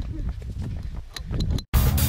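Low rumble on the microphone, with a few footstep clicks on a dirt path. Near the end the sound cuts out for an instant and loud, driving background music starts.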